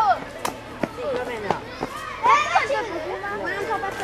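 Children's high-pitched voices calling out and chattering over one another, loudest about two seconds in, with a few sharp clicks in the first second and a half.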